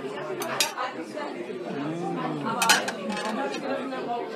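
Metal serving utensils clinking against stainless steel chafing pans amid a room full of people chatting. A few sharp clinks come near the start, and the loudest comes about two-thirds of the way through.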